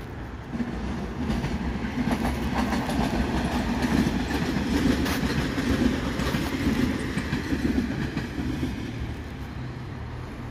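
Stadler FLIRT electric commuter train (VR Sm5) passing on the tracks, its wheels rolling and clattering over the rails. It grows louder about a second in, is loudest midway, and fades as it moves away.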